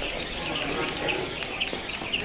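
Speed ropes spinning through double-unders, ticking against the floor in a rapid, even rhythm of about four to five clicks a second.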